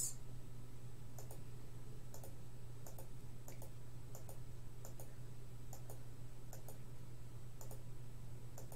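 Faint, irregular clicking at a computer, roughly one click a second, over a steady low hum.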